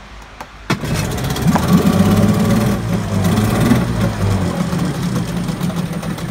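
Yamaha-built Mariner 8 hp two-stroke twin-cylinder outboard starting: it catches suddenly about a second in and runs at a fast warm-up speed for a few seconds. Near the end it drops to a steady low idle, showing it starts easily and idles well.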